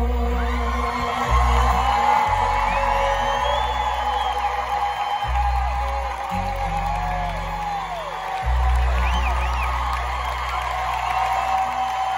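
A live country band plays the instrumental ending of a song, with long held bass notes changing every few seconds. The crowd cheers and whoops over it.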